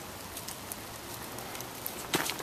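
Steady rain falling: an even hiss with a few faint ticks of single drops.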